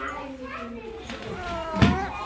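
Young children's voices talking and calling out in a classroom, with a short thump near the end.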